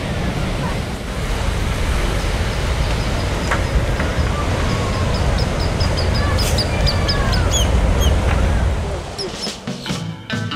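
Wind and surf noise, heavy in the low end, with a run of short, repeated high bird calls through the middle. The noise drops away near the end.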